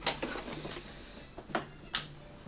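Hard plastic clicks and knocks from a Hasbro HISS tank toy being handled as parts are fitted onto it: a couple of sharp clicks at the start, then two more about a second and a half in.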